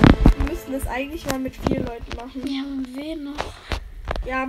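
A person's voice making drawn-out, wordless sounds that hold and glide in pitch, with a few faint clicks in between.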